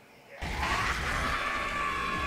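Dramatic soundtrack from the animated show, starting suddenly about half a second in: a held high-pitched cry over a deep rumble.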